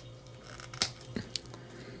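Hands handling a plastic action figure as its purse strap is fitted over the body: faint rubbing of plastic, with a sharp click a little before the middle and two smaller clicks soon after, over a low steady hum.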